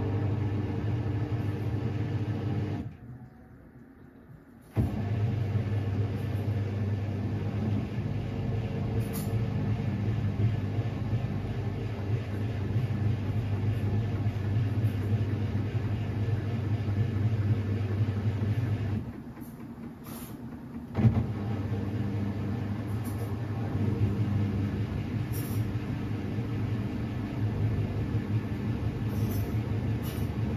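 Samsung front-loading washing machine turning its drum, the motor running with a steady hum. The motor cuts out twice, for about two seconds around three seconds in and again near twenty seconds, and starts up again each time, the second time with a sharp knock.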